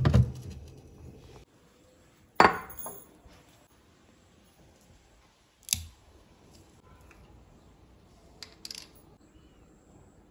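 Glass baking dish clunking onto a refrigerator shelf, followed by a few sharp knocks and light clicks spaced seconds apart.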